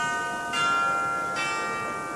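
Outro jingle of bell-like chimes: a chord of ringing bell tones, struck again about half a second in and once more past the middle, each strike ringing on and slowly fading.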